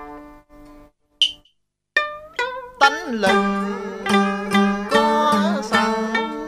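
Southern Vietnamese đờn ca tài tử string ensemble of đàn tranh zither and đàn kìm moon lute playing plucked notes with bent, wavering pitches. The notes fade out and the music stops for about a second, then comes back fuller, with a steady low note held underneath.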